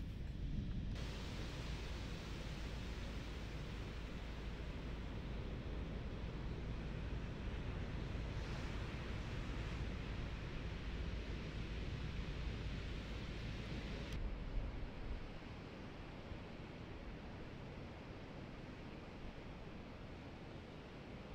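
Steady noise of ocean surf breaking, with low wind rumble on the microphone. The hiss brightens suddenly about a second in and drops away suddenly about two-thirds of the way through, where clips change.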